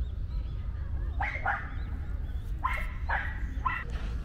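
A dog barking: five short barks, two about a second in, two near the three-second mark and one more shortly after.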